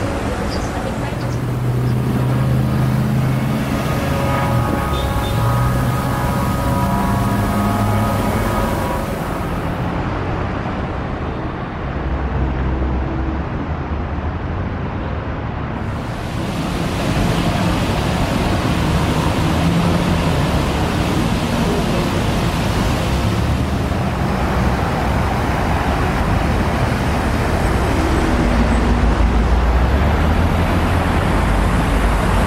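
Road traffic at a busy city intersection: cars and trucks passing with engines running, a steady wash of tyre and engine noise.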